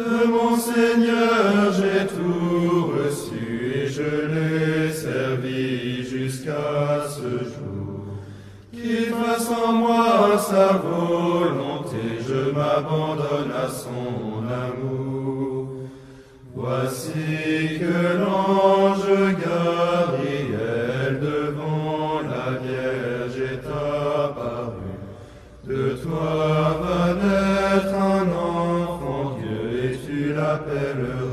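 Slow sung hymn chant in long melodic phrases of about eight seconds, each followed by a short pause for breath.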